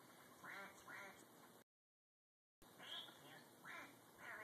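Faint quacking from a television programme: two pairs of short, falling calls, with the sound cutting out completely for about a second between them.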